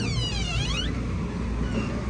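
A door squeaking as it swings open, one squeal of falling pitch lasting under a second, over a steady low outdoor rumble with wind on the microphone.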